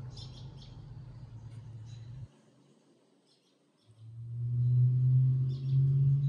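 Birds chirp in short, scattered calls over a low, steady hum. The hum cuts off about two seconds in and comes back louder about four seconds in.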